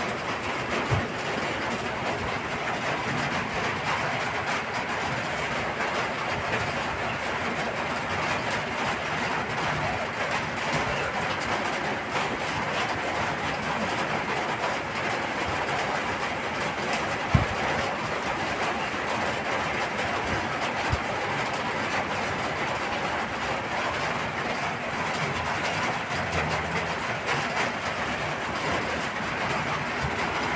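Steady, even background noise with no rhythm, broken by a few brief soft knocks.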